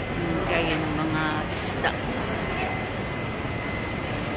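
Busy market-hall crowd noise: steady background chatter of many voices, with a single sharp click a little under two seconds in.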